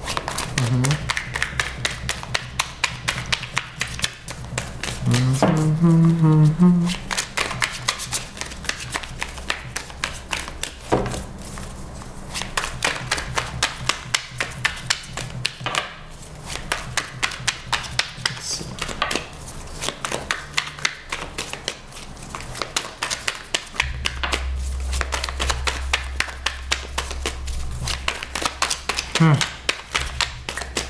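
Tarot deck being shuffled overhand: a dense, rapid run of card clicks and slaps as cards are passed from hand to hand.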